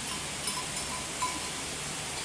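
Faint short clinks of distant cowbells, three or four of them, over a steady outdoor hiss.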